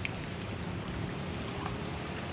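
Steady rain falling, an even hiss with a few faint drop ticks.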